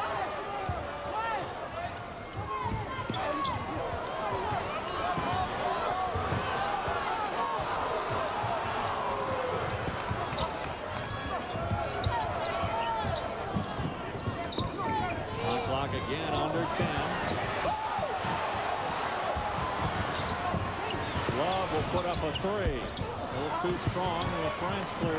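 Basketball game on a hardwood court: a ball dribbling and sneakers squeaking, over a steady noise of a large arena crowd.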